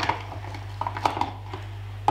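Glass blender grinding jar filled with whole spices being twisted tight onto its blade unit: a few light clicks and scrapes of glass and plastic threads, one right at the start and a few more around a second in.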